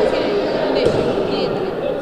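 Indistinct voices of players and spectators echoing in a large sports hall, a steady murmur with no clear words.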